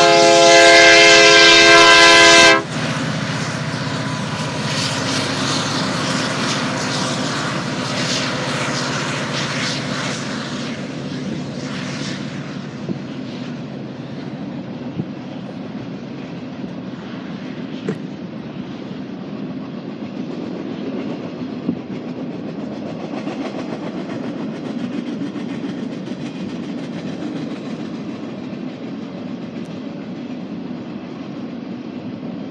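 Union Pacific diesel locomotive's air horn sounding one long blast of about two and a half seconds. Then an empty freight train rolls past with a steady rumble and clatter of its cars, slowly fading, and a few sharp clicks from the wheels.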